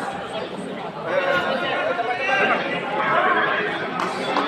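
Crowd chatter: several people talking at once, with no single voice standing out.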